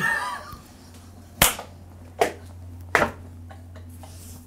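A woman laughing, then three sharp hand claps spaced a little under a second apart.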